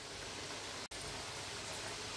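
A pot of pork in crushed tomato sauce simmering on the hob: a steady sizzling hiss that breaks off for an instant just under a second in.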